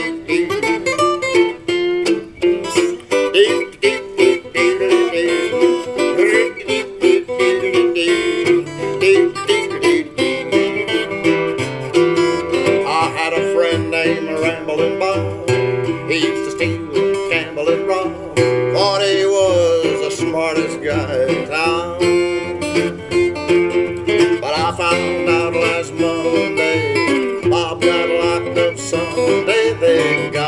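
Instrumental acoustic string music in an old-time country style: a small-bodied acoustic string instrument strummed in a steady rhythm, with a melody that slides in pitch through the middle.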